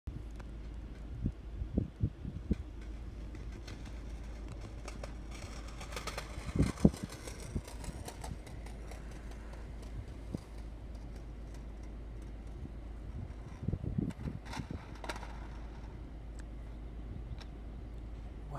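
Car engine running, heard as a steady low rumble from inside the cabin, with a few short thumps and knocks in clusters at about two seconds, seven seconds and fourteen seconds.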